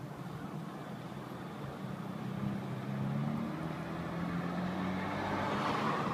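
Steady low hum of a car, heard from inside the cabin. It comes in about two seconds in and grows slowly louder.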